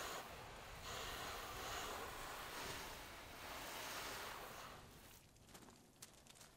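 Garden hose spray nozzle spraying water onto a truck's side panel, a steady hiss that shifts slightly about a second in and dies away near the end as the spray stops.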